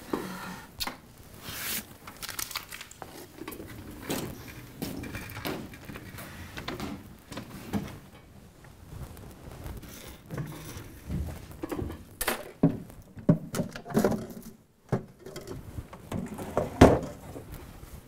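Scattered knocks, thumps and rustles at an irregular pace, with the loudest sharp knock near the end.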